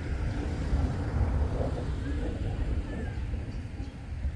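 Outdoor ambience: a low, uneven rumble with a faint murmur of distant voices.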